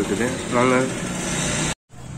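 A short stretch of a person's voice over a steady background hum, which cuts out abruptly near the end at an edit.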